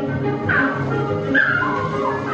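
Orchestral music from an animated film's soundtrack, with a couple of sliding high notes.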